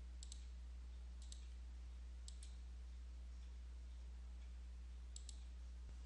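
Faint computer mouse clicks: several short clicks, some in quick pairs, as dialog boxes are saved and closed. A steady low hum runs under them.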